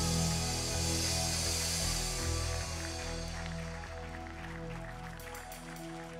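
Live worship band holding sustained chords, with steady low bass and keyboard tones. A high, hiss-like wash fades out about halfway through.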